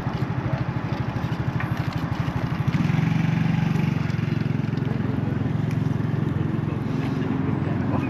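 Small motorcycle engine idling with a fast, even putter, then growing louder and steadier about three seconds in as it pulls away.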